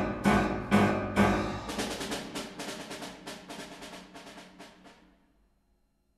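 Chamber ensemble music closing its march: three accented strikes about half a second apart, then a quicker run of percussion strokes that fades away about five seconds in.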